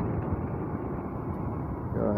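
Motorcycle running steadily on the road, heard from the rider's seat as a constant engine and road noise with no changes in pace.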